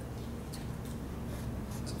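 A quiet pause in a room: a steady low hum with a few faint, brief rustles of paper.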